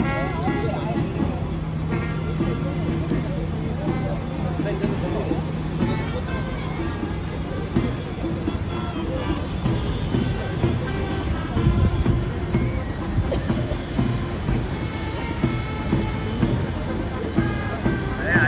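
A naval military band playing, mixed with crowd chatter and road traffic.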